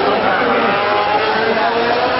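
Racing motorcycle engine heard as the bike goes away after passing, its note falling, with voices mixed in.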